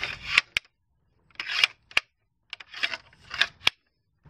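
Skimlite SnapLite push-button pool pole being worked: the aluminium sections slide through the lock housing with short scrapes, and several sharp clicks sound as the spring button snaps into the holes and locks the section.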